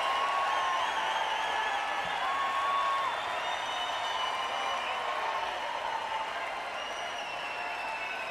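Large concert crowd applauding and cheering, with held woos and warbling whistles rising over the steady clapping.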